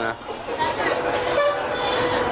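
Busy street background with a distant vehicle horn held as a steady tone from about a second in.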